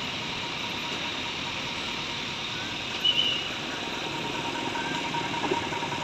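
Tow truck engine idling steadily, with a brief high-pitched tone about three seconds in.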